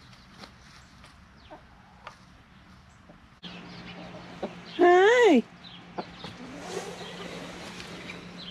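Chickens clucking, with one loud, short chicken call about five seconds in that rises and then falls in pitch. Softer, rapid calls follow.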